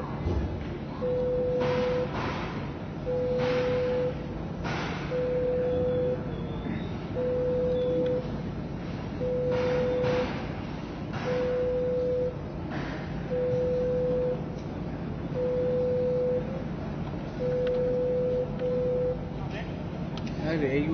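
A single-pitched electronic beep, about a second on and a second off, repeating ten times over a background murmur of voices.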